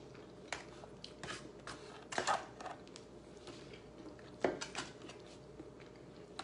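Fork and knife clicking and scraping against an aluminium foil food tray while food is cut, a scattering of short, irregular clicks over a faint steady room hum.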